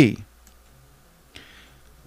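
A man's spoken word trails off, then a quiet pause with faint mouth clicks and a short soft in-breath before he speaks again.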